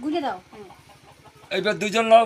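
A voice chanting mantras in a sing-song tone. There is a short rising-and-falling syllable at the start, then a longer held, wavering phrase from about one and a half seconds in.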